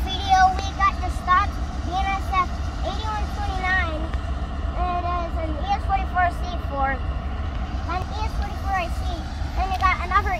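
Mostly a child's speech, over a steady low rumble.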